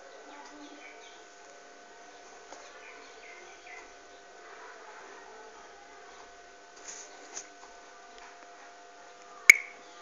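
Quiet room background with a faint steady hum, a few faint chirps in the first half, and one sharp click about nine and a half seconds in.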